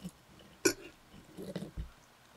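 Close-miked eating sounds: a sharp click about two-thirds of a second in, then soft wet chewing and a low gulp near the end.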